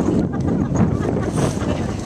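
Wind buffeting the camera microphone: a loud, low, gusting rumble.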